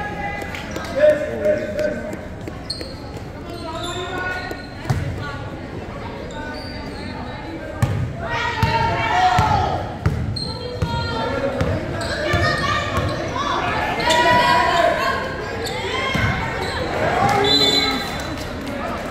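Voices shouting and calling out in a gymnasium, with a basketball bouncing on the hardwood floor, several bounces in a row about halfway through.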